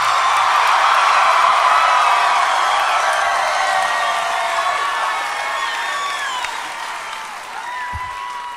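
Crowd cheering and shouting, fading gradually over several seconds.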